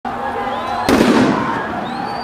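A single loud bang about a second in, followed by a hissing rush that fades: a tear gas canister going off. Voices and street noise continue around it.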